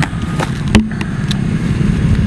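Loud, uneven low rumble of wind on the microphone, with a few short clicks and knocks, the loudest about three quarters of a second in, as hands work in a plastic bucket of urea granules.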